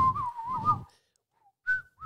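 A person whistling a warbling, robin-like tune close to the microphone: a wavering whistle that trills up and down for about a second, a short pause, then a brief higher whistle near the end.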